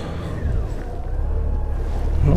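Honda GL1800 Gold Wing's flat-six engine running at low revs as the motorcycle rides off slowly, a steady low rumble that builds slightly.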